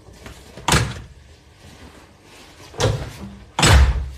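Apartment front door being shut and handled: three loud thuds, one about a second in and two close together near the end, the last the loudest.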